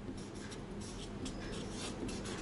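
Marker pen writing on a paper chart, a run of faint short strokes as a word is written.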